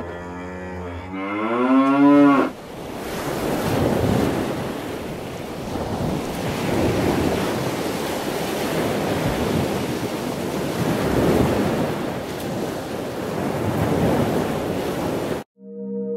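A cow mooing once, its call rising in pitch over about two seconds. It is followed by a long stretch of even rushing noise that swells and fades, then cuts off suddenly.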